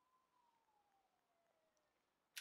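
Near silence: room tone, with a very faint single tone that rises and then slowly falls in pitch.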